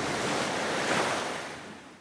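Sea surf washing in, a rushing hiss that swells about a second in and then fades away.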